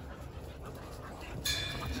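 Jindo dog panting close by, a steady breathy sound. Near the end a sudden short high-pitched ring cuts in.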